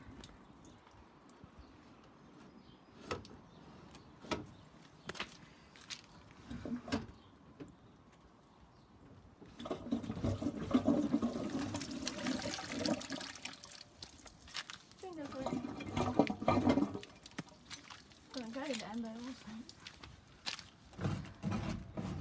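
Water pouring and splashing out of a tipped-up toilet pan onto the ground, starting about ten seconds in and lasting a few seconds. Before it there are a few scattered knocks from handling.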